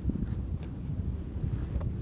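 Wind buffeting the microphone in a low, uneven rumble, with a few faint clicks and knocks.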